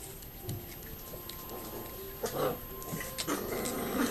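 A six-week-old Yorkiepoo puppy making short little vocal sounds, once about two seconds in and again in the last second.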